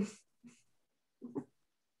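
A brief, soft voiced chuckle about a second in, after the last word fades out, amid otherwise near-quiet room tone.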